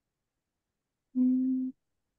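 A person humming a short, steady "mmm" on one pitch, about half a second long, a little past halfway through; otherwise dead silence.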